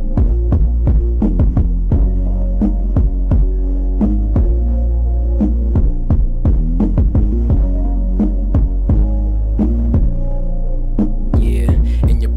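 Hip-hop instrumental beat: a deep sustained bass under held keyboard chords, with sharp percussion hits. A brighter hissing layer comes in near the end.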